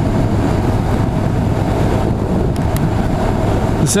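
Honda NC750's parallel-twin engine running steadily at cruising speed, mixed with wind rushing over the microphone.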